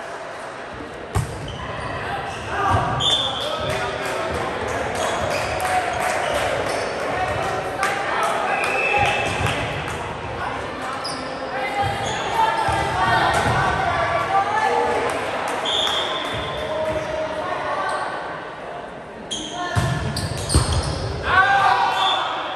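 Volleyball rally in a large, echoing gym. The serve's hand strikes the ball about a second in, followed by further ball contacts, with players' voices calling out between the hits.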